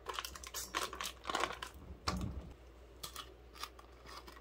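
A run of small clicks and crinkling handling noises, with a dull thump about two seconds in and a few more clicks near the end.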